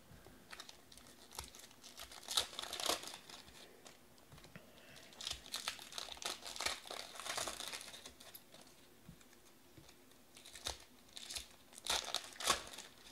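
Foil trading-card pack wrappers crinkling and tearing as packs are opened and the cards handled, in soft irregular rustles with quiet gaps.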